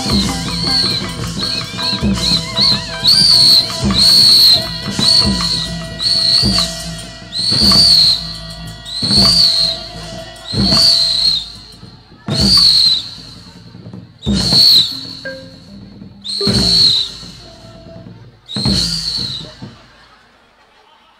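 A shrill whistle blown again and again, each blast starting with a thump: quick short toots in the first few seconds, then longer blasts that rise and fall in pitch, spaced about every two seconds and slowing toward the end. It is played over a Burmese hsaing ensemble as a sound effect for stage slapstick.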